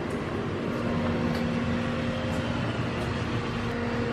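Swimming-pool plant-room machinery running: a steady hum with a constant low tone over a noise of moving air and water.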